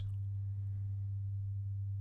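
Steady low electrical hum, a single unchanging low tone on the recording.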